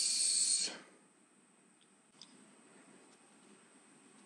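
A short, loud hissing breath, like air let out through the teeth, that fades out within the first second, followed by near silence.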